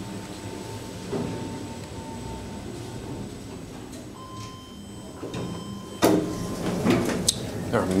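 Schindler 5400 machine-room-less traction elevator: steady car hum, a short tone about four seconds in, then the car's sliding doors opening with a sudden loud start about six seconds in.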